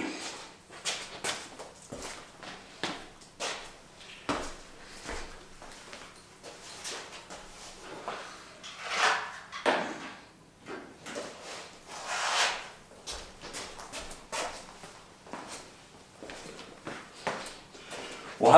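Irregular knocks, clicks and rustles of gear being picked up and moved around, with a few louder swishing noises along the way, and a hard plastic carrying case being brought over near the end.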